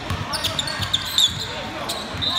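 Basketball being dribbled on a hardwood gym floor, a few bounces a second, the loudest just past halfway through.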